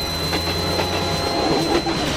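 Soundtrack sound effect: a steady high whine held over a rattling clatter and a low hum, the whine cutting off at the end.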